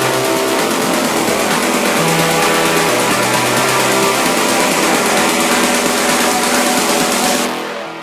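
Techno track in a breakdown with no kick drum. A dense, hissing distorted-synth wash sits over held synth tones, with a low bass alternating between two notes about every second. Near the end the hiss cuts off and the level drops.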